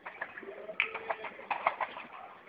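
Distant gunfire: a scatter of short sharp cracks, several close together about halfway through and again near the end.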